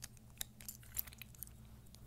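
Small plastic parts of a Beyblade top clicking as it is taken apart by hand: a handful of short, sharp ticks, the loudest about a second in.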